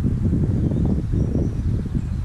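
Wind buffeting the microphone: a loud, uneven low rumble.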